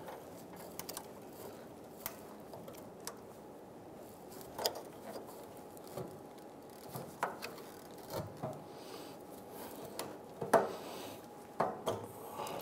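Faint, scattered clicks and creaks of a plastic fuel-line quick-connect fitting being pushed in and worked loose, the fitting stuck with corrosion. The clicks get louder near the end as the line comes free.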